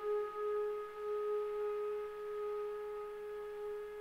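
A single long-held note at a steady pitch, pure-sounding with faint overtones, in a free-improvised jazz piece; it eases off slightly near the end.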